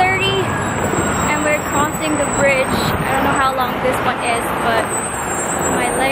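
A woman talking over steady road traffic noise from passing cars and buses, with wind buffeting the microphone.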